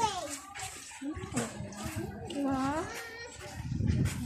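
Voices talking at some distance, a child's voice among them, over a faint rushing noise.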